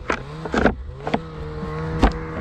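A snow shovel knocking and clattering against a snowmobile's tunnel as it is packed onto the sled: three sharp knocks, the loudest about half a second in. Under them a snowmobile engine idles steadily, its pitch rising briefly at first and then holding level.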